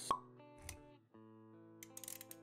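Intro music with sustained notes, cut by a sharp pop sound effect just after the start and a lower thump a little over half a second in; the music drops out briefly near the middle and then comes back.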